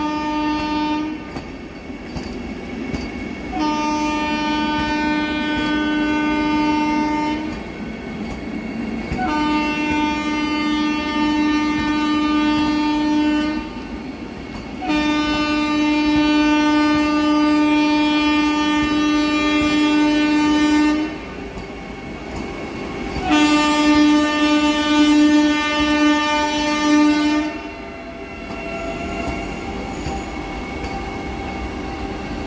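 Vande Bharat Express trainset sounding its horn in a series of long blasts: one ending about a second in, then four more of roughly four to six seconds each, the last one wavering. Under the horn, the train rumbles and its wheels clack over the rails as it rolls slowly by.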